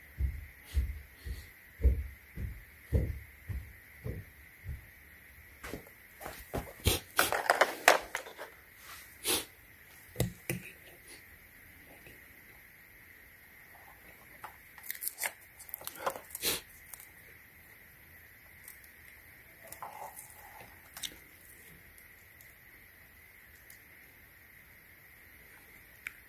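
Handling sounds: a run of soft low thumps about twice a second, then rustling and crinkling with scattered clicks and knocks. This is hands working with a multimeter, nitrile gloves and a vacuum's lithium-ion battery pack. A faint steady high tone sits under it all, and the last several seconds are nearly still.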